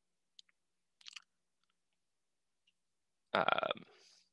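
A few faint, short clicks in the first half, then a man's hesitant "um" near the end.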